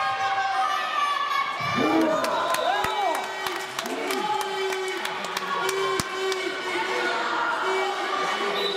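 Children shouting and cheering on a handball court in a sports hall, with high voices calling over one another and one long held call in the second half. A handball bounces sharply on the court twice, about three and six seconds in.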